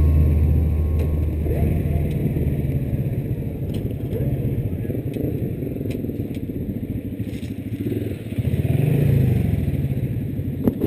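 Honda Wave underbone motorcycle's single-cylinder four-stroke engine running as the bike rolls slowly and pulls up, with a brief swell in the engine note near the end.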